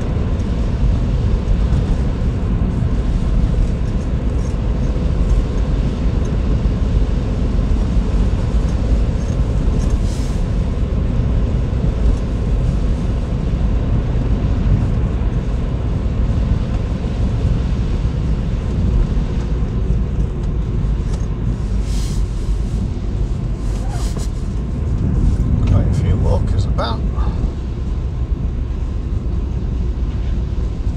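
Steady car cabin noise: engine and tyres rumbling on a wet road while driving, with a few short clicks along the way and a brief pitched sound near the end.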